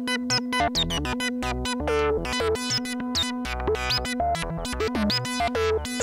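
Eurorack modular synthesizer playing a pattern stepped by a Doepfer A-155 analog/trigger sequencer under an A-154 sequencer controller: a rapid stream of short pitched notes, many with a quick downward pitch blip at the start, over a steady held tone and low bass notes. The sequencer's clock is being switched between its own clock and half-time and third-time divisions from a clock divider, changing the rhythm.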